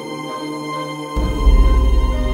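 Background music of sustained held tones; a deep bass comes in a little over a second in and the music grows louder.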